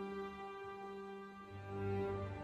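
Slow film score music: long held bowed-string notes, with a deeper note coming in near the end.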